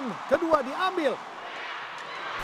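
A woman's voice giving several short, excited shouts in the first second, over a faint, steady hum of arena crowd noise: badminton players celebrating winning a game.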